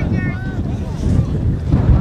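Wind buffeting the camera microphone in a steady low rumble, with brief shouts from people on the field about half a second in.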